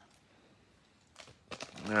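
Quiet room tone, then, a little over a second in, a few short crackles of a foil trading-card pack wrapper being handled and torn open, just before a man's voice starts.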